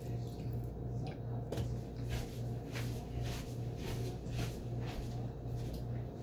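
Someone chewing french fries, soft crunching noises coming evenly about twice a second, over a steady low hum.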